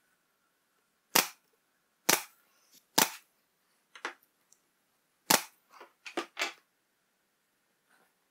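Pneumatic brad nailer firing brad nails into the plywood sides of a drawer: three sharp shots about a second apart, then a fourth after a short pause, with several quieter cracks and clicks among and after them.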